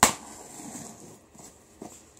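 A key striking and scraping along the taped seam of a cardboard shipping box as it is cut open: one sharp tap at the start, then about a second of faint scraping.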